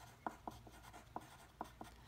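Graphite pencil writing numbers and plus signs on paper: faint, short scratches and taps of the lead, a few a second.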